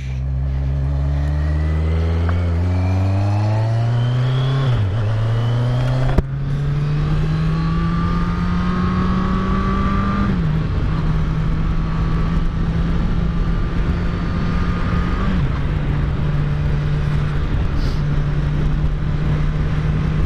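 Kawasaki Z900's inline-four engine pulling away and accelerating through the gears. Its pitch climbs and drops back at each upshift, about five, six and ten seconds in, then holds steady at cruising speed over wind and road noise.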